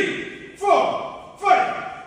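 A voice shouting short calls in a steady rhythm, three in two seconds, each starting sharply and falling in pitch, in time with quick sit-ups.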